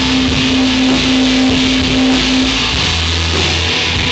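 Rock band playing live in an instrumental intro: a single note is held for the first two and a half seconds and then stops, and a deep low note takes over near the end, over a dense, loud wash of sound.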